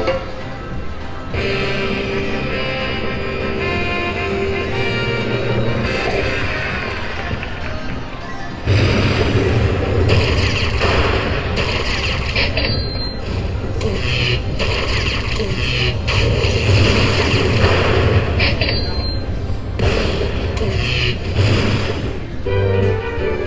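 Slot machine bonus sound effects: a melodic jingle for the first eight seconds, then a sudden, louder run of booming strikes and rumble about nine seconds in as the bonus win counts up.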